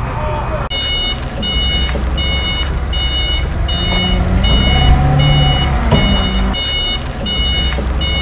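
A vehicle's reversing alarm beeping evenly, about four beeps every three seconds, each beep roughly half a second long, over a steady low engine rumble. The beeping starts abruptly about a second in.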